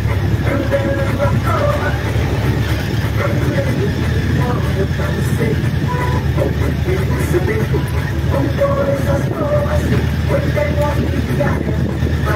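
Steady low rumble of a motorcycle riding over a cobblestone street, with faint scattered voice-like snatches over it.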